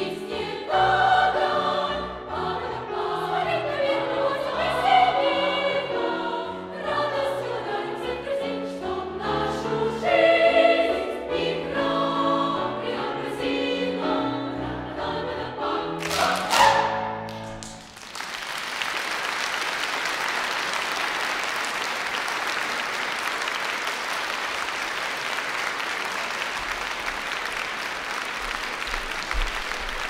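Girls' choir singing with piano accompaniment, building to a final held chord that ends about two-thirds of the way through. Steady audience applause follows.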